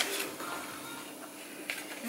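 Quiet handling of a plastic robot vacuum turned over in the hands, with a brief click at the very start and faint rubbing and tapping after it.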